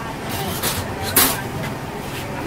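Three short hissing bursts, the loudest just after a second in, over a murmur of background voices.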